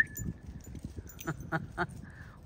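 A person's whistle, a steady note, cuts off at the very start. After it comes faint crackling, with three or four quick ticks about a second and a half in.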